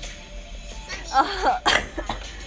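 A tablet's speaker playing a video clip with background music and a sped-up, high-pitched girl's voice from about a second in, heard through the room. A short, loud burst near the end.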